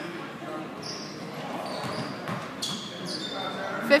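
Basketball-game sound in a gymnasium: a basketball dribbling on the hardwood under low crowd chatter, with a few short, high squeaks, probably sneakers on the court, in the second half.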